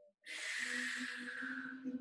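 A long, audible breath out through the mouth, a sigh with a low hum of voice under it. It starts suddenly about a quarter-second in and fades over about a second and a half, a breath of effort while holding a deep hip stretch.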